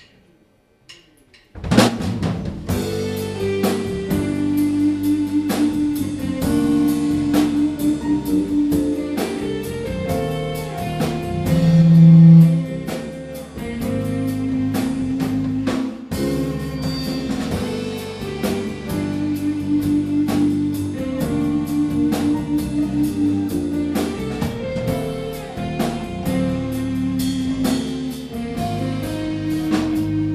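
Live band starting a song's instrumental intro: drum kit, bass guitar and keyboard come in together about a second and a half in, after a few faint ticks, and play a steady groove with a rising and falling bass line.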